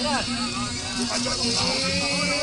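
Voices of people talking among themselves, short fragments, over background music with a steady line of low repeated notes that drops in pitch partway through.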